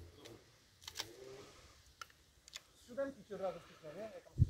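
Mostly quiet, with a few faint sharp clicks about a second apart and a faint man's voice speaking in the last second.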